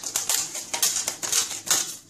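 Plastic cling film being pulled off its roll and stretched over a bowl, a quick irregular run of crackles and rustles.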